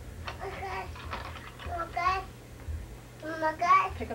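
A toddler's voice babbling and calling out in short high-pitched bursts, the loudest near the end, over a steady low hum on the tape.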